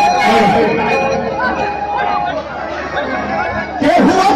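A man's voice over a public-address system at a live stage show, with a held instrumental note sounding underneath and crowd chatter all around.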